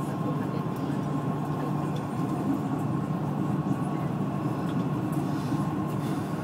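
Dubai Metro train running between stations, heard inside the carriage: a steady low rumble with a thin, steady high tone above it.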